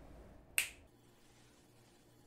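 A single finger snap, sharp and brief, about half a second in, followed by a faint low hum.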